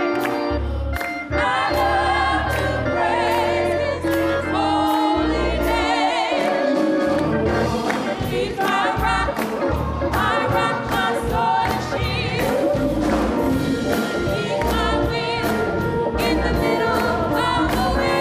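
A women's gospel choir singing, with clear vibrato in the held notes, over a keyboard accompaniment with long low bass notes. Handclaps keep a steady beat.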